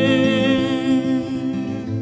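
A man humming a long held note with vibrato over fingerpicked acoustic guitar; the voice fades out about a second and a half in, leaving the guitar.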